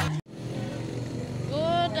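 Background music cuts off abruptly at an edit, then a steady outdoor rumble and hiss, with a woman starting to speak near the end.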